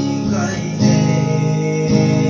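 Two acoustic guitars strummed together in a live song, with a man singing into a microphone. A loud fresh strum comes in a little under a second in.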